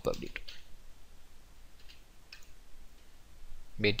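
A few faint, widely spaced keystrokes on a computer keyboard as code is typed.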